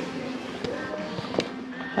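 Background music playing in a thrift store, with faint voices under it. A couple of light clicks come through as shoes are handled in a shopping cart.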